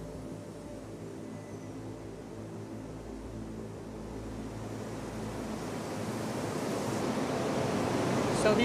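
Rushing hiss of air in a robotic car-body paint booth, growing steadily louder through the second half as the painting robots start working. Faint music fades out near the start.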